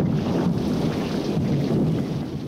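Steady, loud rushing and rumbling of a ship at sea, engine and water noise together.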